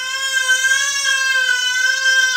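A toddler's loud, long yell held on one steady high pitch.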